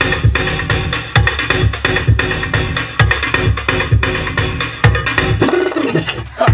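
Electronic dance music played loud off CD decks through a DJ mixer, driven by a heavy kick-drum beat with bass hits about twice a second. Near the end the bass drops out for a moment under a brief sweeping sound.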